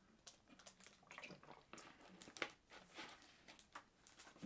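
Near silence with faint, scattered small clicks as a person drinks from a plastic bottle.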